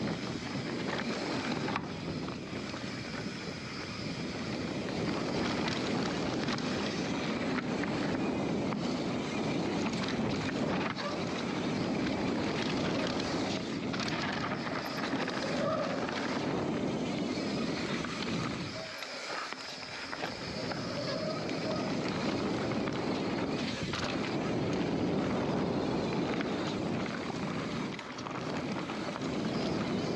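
Mountain bike descending a dirt trail at speed: tyres rolling over dirt, the bike rattling over rough ground, and wind on the microphone. The low rumble briefly drops out for about a second about two-thirds of the way through.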